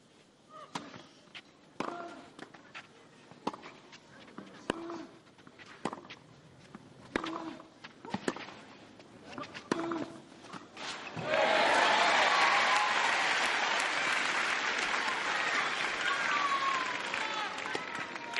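Tennis rally on clay: a serve, then racket strikes on the ball trading back and forth about once a second. About eleven seconds in, the crowd breaks into loud cheering and applause with shouting.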